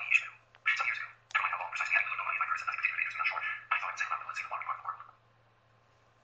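Audiobook narration played at very high speed through the iPad's speaker: a rapid, thin-sounding stream of speech, stopping about five seconds in.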